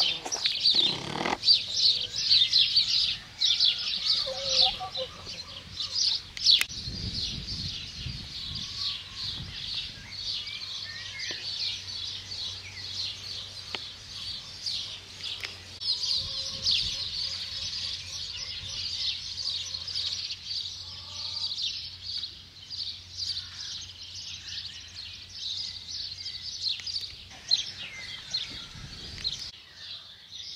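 Small birds chirping and singing continuously, many short overlapping chirps making a dense, high chorus.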